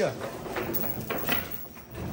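Heavy steel chain clinking and rattling in a few scattered strokes as it is handled and pulled around a door to lock it.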